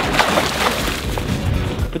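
Line being pulled off a shark-fishing reel against its drag: a fast, crackly clicking buzz, strongest over the first second and a half.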